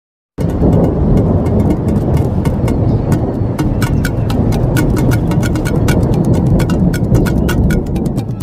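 An intro sound effect: a loud, steady low rumble overlaid with a fast, irregular crackle of sharp clicks, starting abruptly just after the opening.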